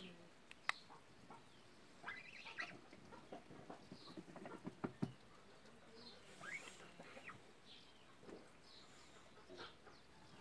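Domestic geese calling faintly now and then, with scattered sharp clicks and shuffling.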